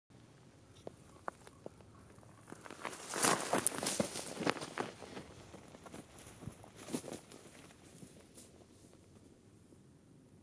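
Crunching and crackling on gravel and dry brush, with a few sharp clicks in the first two seconds and loudest from about three to five seconds in, then a smaller burst near seven seconds.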